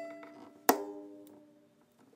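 Fiddle's E string plucked and left ringing, fading away, then plucked again about two-thirds of a second in and dying out as it is tuned down toward D at the peg.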